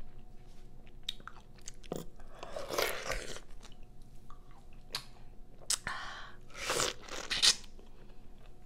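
Close-miked chewing and biting of fresh pineapple: wet, crunchy bites with scattered sharp clicks and a few longer noisy bursts, the loudest near the end.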